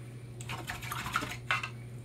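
Light clicks and clinks of acrylic painting tools being handled on a work table, the sharpest about a second and a half in, over a steady low electrical hum.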